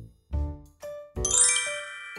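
A bright ding-like chime sound effect starts a little over a second in: many high ringing tones struck together, held and slowly fading. A couple of short low musical notes come before it.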